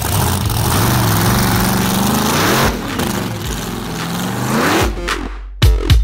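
Drag race car accelerating hard down the strip at full throttle: loud engine and exhaust over a rushing noise, the engine pitch rising and falling a couple of times. The car sound stops about five seconds in and beat-driven music takes over.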